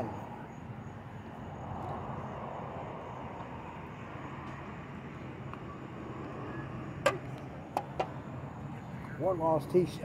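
A putter strikes a golf ball with a sharp click about seven seconds in, followed by two lighter knocks less than a second later, over a steady outdoor hum with road traffic. A man's voice starts just before the end.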